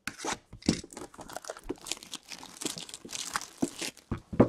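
Clear plastic shrink-wrap being torn and crumpled off a metal trading-card tin, a dense run of irregular crackles.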